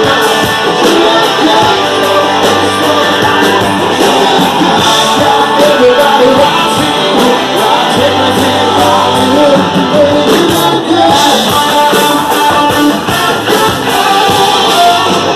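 A live rock band playing loudly, with electric guitars over drums and a voice singing.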